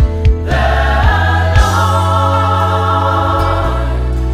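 Gospel worship song: a woman sings the lead line with a choir singing behind her, over a band with steady bass, keyboard and a few drum hits.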